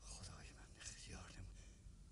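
Faint whispered speech, breathy and under the breath, in the first second and a half, over a low steady hum.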